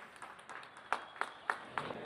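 A few sharp hand claps, about four in a second, over a low murmur of a crowd in a large hall: scattered applause beginning at the reveal of the skeleton.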